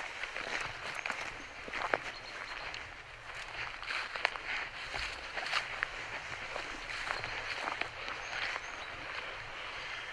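Footsteps on grass and loose stones, with irregular crunches and small knocks and the rustle of clothing and gear as people walk.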